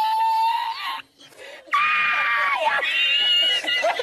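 A man's high-pitched, drawn-out laughter: long held squealing wails that break off about a second in, then resume and climb higher.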